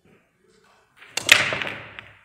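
Pool break shot: about a second in, the cue ball cracks loudly into the racked balls, followed by the clatter of balls clicking off one another and the cushions as they scatter.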